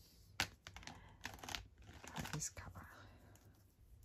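A few sharp, light clicks and clatters of plastic alcohol markers being handled, caps pulled off and snapped back on, as the markers are swapped for another colour.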